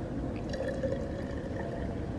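Sparkling rosé wine poured steadily from its bottle into a glass for a mimosa.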